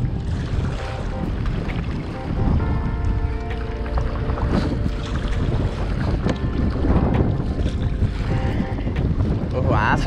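Wind buffeting the microphone over open water, a steady low rumble, with a faint steady hum of several tones for a couple of seconds in the middle and again near the end.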